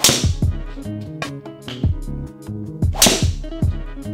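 Two golf drives with a Ping G400 LST driver, about three seconds apart: each a sharp crack of the clubhead striking the ball. Background music with a steady beat plays throughout.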